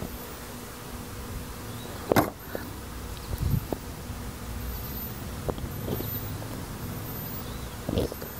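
Small handling sounds of seeds being set into rockwool cubes by hand: one sharp tap about two seconds in, then a few light clicks, over a low steady hum.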